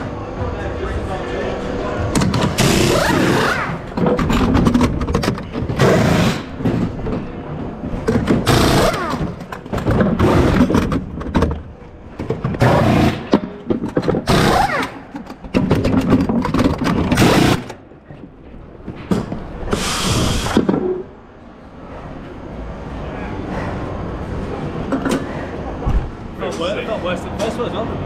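Pneumatic wheel guns working in a string of short, loud bursts as the wheel nuts are undone and done up again during a pit-stop tyre change, with a longer burst about twenty seconds in.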